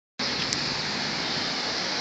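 Steady rush of road traffic with a faint low engine hum underneath, and a small click about half a second in.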